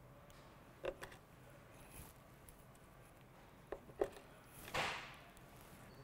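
Hand wire strippers working on thin 18-gauge wire: a few sharp clicks about a second in and again near four seconds, then a short rustle near five seconds as the insulation is pulled off.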